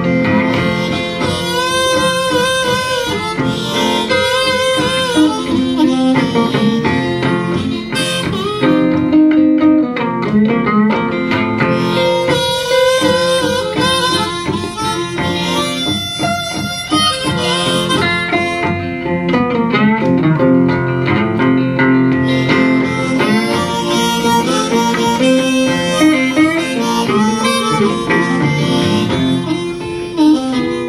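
Live blues instrumental break: harmonica, played hands-free at the microphone, wailing bent notes over a driving acoustic guitar accompaniment.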